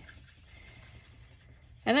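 Faint scratching of an Ohuhu alcohol marker's nib stroking over smooth marker cardstock, going over a coloured edge to blend it. A word of speech comes in near the end.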